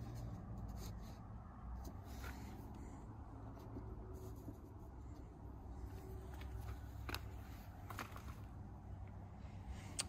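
Faint handling sounds: a thin template being shifted on a sheet of plywood, with a few light taps and scrapes, over a steady low rumble.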